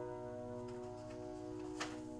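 An upright piano chord left ringing and slowly fading, with a few faint clicks and then one sharp click near the end.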